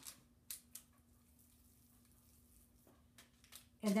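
Faint handling noises from hands rolling a raw ground-meat meatball over a foil-lined sheet pan: two short crackles about half a second in and a few fainter ones near the end, over a faint steady hum.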